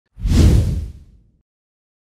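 A single whoosh sound effect for a title card, swelling quickly and fading away within about a second and a half.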